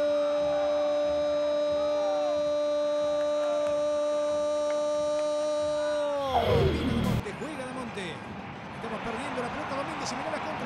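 A Spanish-language football commentator's long drawn-out goal call, one "gol" held on a single steady note for about six seconds, then falling away in pitch. A short whoosh follows about six and a half seconds in, then stadium crowd noise.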